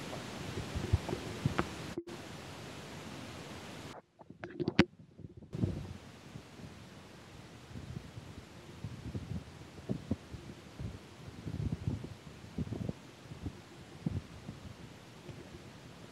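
Wind rushing over a moving bicycle's camera microphone, a steady hiss with irregular low buffeting thumps. The sound cuts out sharply about two seconds in and is almost gone for about a second and a half around the four-second mark.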